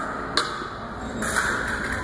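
A wireless fencing scoring box and its body-wire plug being handled: one sharp click about half a second in, then a short rustle of handling.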